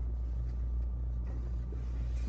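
A steady low rumble and hum, with a few faint, soft sounds over it.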